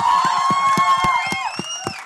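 A group of people laughing and calling out over one another, with a few sharp taps, fading down near the end.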